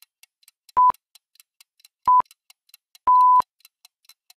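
Countdown timer sound effect: short, steady-pitched beeps about every 1.3 seconds over faint quick ticking. The last beep, near the end, is held longer and marks the end of the countdown.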